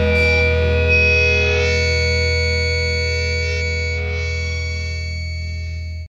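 A final distorted electric guitar chord of an emotive hardcore song left ringing, fading slowly, then cut off abruptly at the very end.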